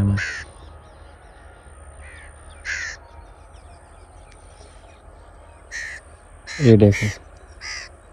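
A bird calling outdoors: short, separate calls repeated every second or so over a low steady background.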